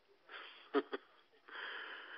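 A man laughing breathily into the microphone: a puff and two short bursts, then about a second and a half in a long wheezy exhale.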